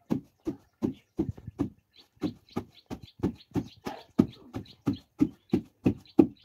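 Wooden pestle pounding leafy greens in a carved wooden mortar: a steady thud about three times a second.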